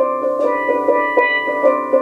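Steelpan struck with two mallets in quick repeated two-note strikes, about four a second, the notes ringing on over each other. The pattern works from a D7 chord (D, F sharp, A, C) in double stops.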